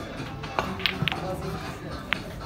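Pool balls clicking: the cue tip striking the cue ball and balls knocking together, four sharp clicks starting about half a second in, the last two close together. Background music plays throughout.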